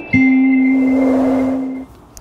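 Closing note of a short musical intro jingle: one long held note that fades out shortly before two seconds, with a soft noise swell under it in the middle.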